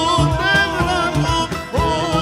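A man singing a Turkish Sufi (tasavvuf) hymn with ornamented, bending melody lines into a microphone. An ensemble of oud, cello and percussion accompanies him, the drums keeping a steady beat, and the voice breaks off briefly near the end.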